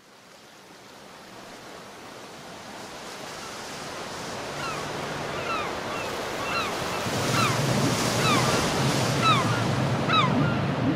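Ocean surf washing on a beach with wind, fading in from silence and growing steadily louder. From about halfway, repeated short falling bird calls and a low steady hum join in.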